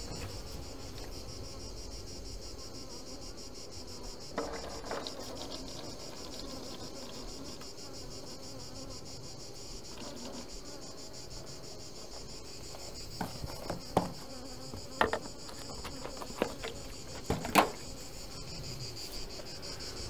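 Steady, high-pitched chirring of summer insects, with honeybees humming around the open hives. A scattering of sharp clicks and knocks comes from a plastic bottle and tray being handled, more of them in the last several seconds.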